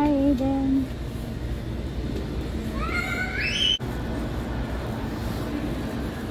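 A young child's high-pitched squeal, rising in pitch about three seconds in and cut off abruptly, over a steady low store hum. A short voiced sound, falling in pitch, comes at the very start.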